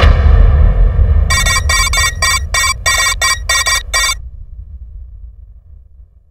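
A film's dramatic sound effect: a deep boom that rumbles and slowly fades, with a run of about nine short, bright electronic stabs between about one and four seconds in.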